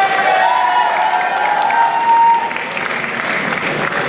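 Audience applauding, with one voice holding a long cheer over it that ends about halfway through.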